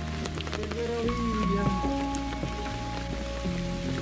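Background music of slow, held chords, the bass note changing about a second in and again near the end, with a few faint clicks scattered over it.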